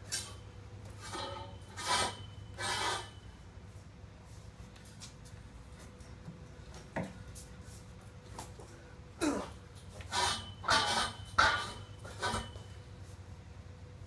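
A man's hard breaths of effort in short bursts, four in the first three seconds and five more from about nine seconds in, as he strains to bend inch-and-a-quarter EMT conduit with a hand bender. There is a single sharp click about seven seconds in.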